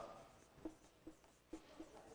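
Faint marker strokes on a whiteboard: about four short scratches as a line of text is written.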